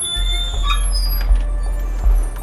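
Music with a deep low drone, over which an overhead garage door rolls up open with thin, high metallic squeals in the first second.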